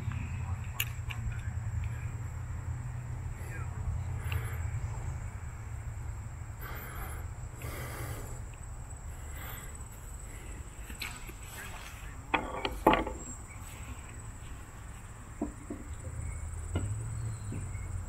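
Crossbow being handled while it is cocked and carried, with a few sharp clicks and knocks about twelve to thirteen seconds in. Under it runs a steady high-pitched insect drone and a low rumble.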